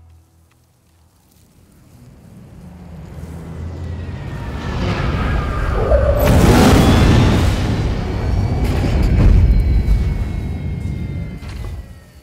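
Film sound effect of a spaceship flying in overhead and landing: a deep rumble that swells over several seconds into a loud roar with a faint falling whine, then dies away near the end. Orchestral film score plays underneath.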